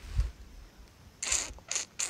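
Handling noise close to the microphone: a low bump just after the start, then a few short rustling scrapes in the second half.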